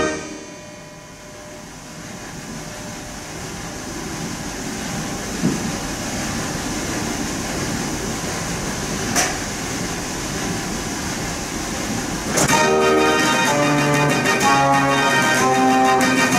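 A Mortier dance organ ends a tune and its sound dies away in the hall, followed by a rushing hiss that slowly grows louder, with two short clicks. About twelve seconds in, the organ starts the next tune.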